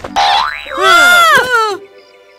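Cartoon comedy sound effects: a quick rising glide, then a loud, bending "boing"-like tone that arches up and down and stops shortly before the end. Soft background music follows.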